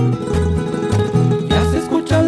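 Music: an instrumental passage of a Mexican song between sung lines, with a bass line moving on the beat under sustained instrumental notes.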